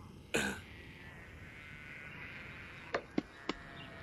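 A man's single short throaty vocal sound, like a brief cough or grunt, about a third of a second in, followed by three faint sharp clicks near the end.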